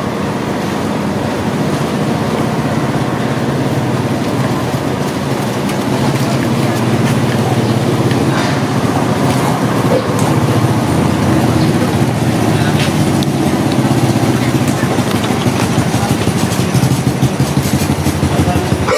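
An engine running steadily with a fast, even pulse, growing a little louder partway through.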